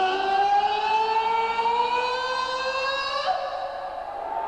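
A male rock singer holding one long high note into the microphone, live through a concert PA, its pitch creeping slightly upward for about three seconds before it stops.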